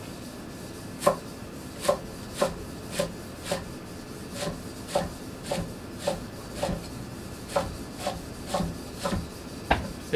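Hand-forged Japanese gyuto chef's knife chopping a leek on an end-grain larch wood cutting board. The blade comes down in sharp, separate knocks, about two a second, starting about a second in.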